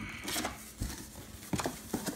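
Cardboard shipping-box flaps being pulled open and folded back by hand: scattered rustles and several light knocks of cardboard.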